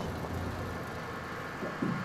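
Forklift engine running steadily as a low rumble.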